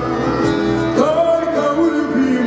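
Small live band playing a slow song: acoustic guitar with saxophone, double bass and accordion.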